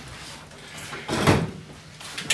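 A chair being set down on a stage floor: one short clunk a little past a second in.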